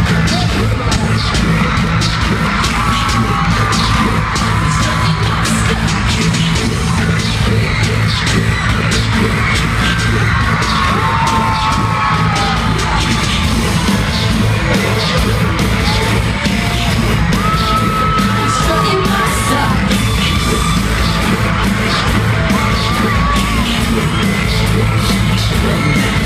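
Loud live pop music with a heavy bass beat played over an arena sound system, heard from among the audience, with crowd members yelling and screaming over it.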